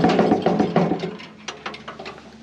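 Woodland Mills HM130Max sawmill head being rocked on its carriage, giving a rapid metallic rattling clatter that fades out about a second in, then a few light clicks. The looseness comes from a gap between the carriage's guide plates, which need squeezing together as a periodic adjustment.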